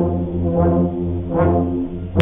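A high school band's brass section playing loud held chords over a deep bass line, with fresh attacks about half a second and a second and a half in.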